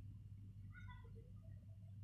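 Near silence: a steady low hum, with a few faint, short high-pitched calls about a second in.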